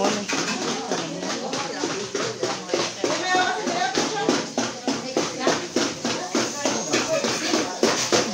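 Indistinct chatter of several voices over a quick, fairly regular series of sharp taps, a few each second.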